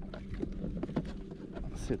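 Low wind rumble on the microphone with a few small clicks and taps as hands handle fishing tackle; a man starts to speak near the end.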